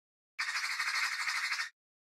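A short intro sound effect: a harsh, high-pitched noise that flutters rapidly, starting about half a second in and cutting off abruptly after about a second and a half.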